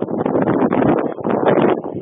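Loud, irregular rustling and buffeting on a police body-worn camera's microphone.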